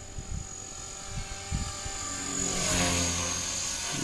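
Radio-controlled model helicopter in flight, its motor and rotor blades whining steadily. The sound swells and grows louder about two and a half seconds in as the helicopter turns and passes closer.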